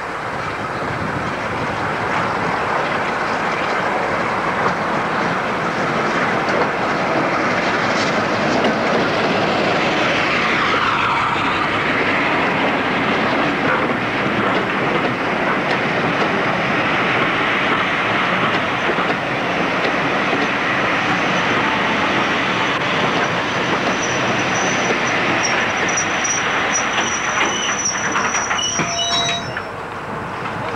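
A passenger train hauled by a Class 52 Western diesel-hydraulic locomotive running into the station alongside: a steady rumble and clatter of coach wheels over the rail joints. High-pitched brake squeal comes in over the last few seconds as the train draws to a stand.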